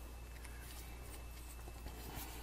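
Quiet room tone with a steady low hum, and a few faint light ticks of handling as a plastic cap is screwed back onto a small tube of heat sink compound.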